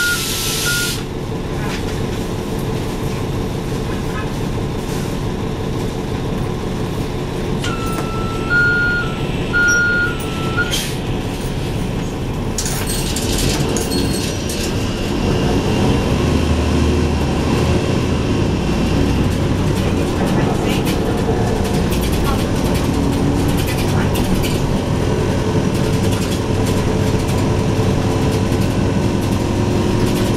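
Interior of a 2012 NABI 416.15 transit bus: the bus's warning chime sounds as an alternating two-tone beep in the first second, with a burst of air hiss, and sounds again for about three seconds near the end of the first third. About halfway through, the bus's engine and ZF Ecolife automatic drivetrain build up as it pulls away and keeps running under way.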